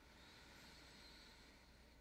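Near silence: a faint, soft hiss of slow breathing through the nose or mouth during a held yoga pose.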